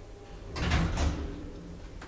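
KONE elevator's automatic sliding doors running, a short rushing, rumbling burst about half a second in that peaks twice and dies down within about half a second.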